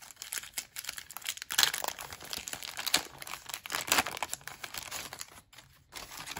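Wrapper of an NBA Hoops basketball-card pack being torn open and crinkled by hand, a run of crackly rustles that is loudest about two and four seconds in and dies away near the end.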